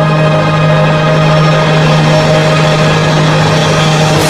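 Instrumental backing track (MR) of a musical number holding its final chord. The sound is loud and steady, with a strong low note sustained under it.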